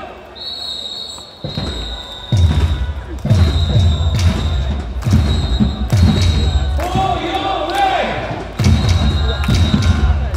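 Stadium cheer music with a heavy, thudding bass-drum beat that kicks in about a second and a half in. Voices chant over it later on.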